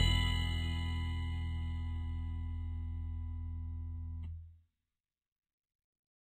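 Background music ending on a held final chord that slowly fades, then cuts off to silence about four and a half seconds in.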